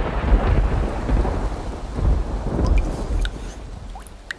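Thunderstorm: heavy rain with rolling thunder, the rumble dying away over the last second or two.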